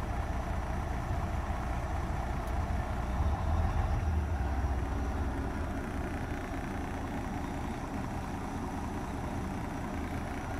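Semi truck's diesel engine idling steadily as a low rumble, heard from inside the cab; it swells slightly a few seconds in.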